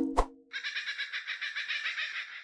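The close of a logo-intro jingle: a last plucked, percussive note just after the start, then from about half a second in a high, rapidly fluttering, bird-like twitter as the logo appears.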